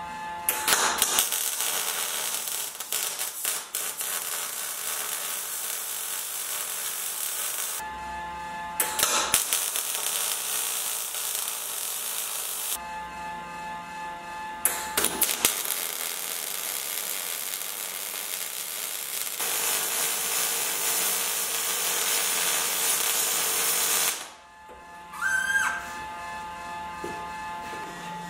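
MIG welding arc of an Oerlikon Citosteel 325C Pro on 3 mm steel strips, running on an argon–CO2 mix: a steady crackling hiss in two long beads of about seven and eleven seconds, with a brief burst between them. The beads are laid at deliberately varied travel speeds, one a little too fast.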